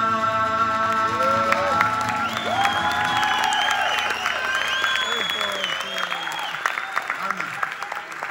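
A long final sung note over a strummed acoustic guitar chord, held for about two seconds. The audience then breaks into applause, with cheering voices calling out over the clapping.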